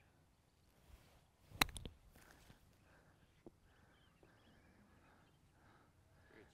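A golf iron striking the ball once, a single sharp click about one and a half seconds in, with faint outdoor quiet around it.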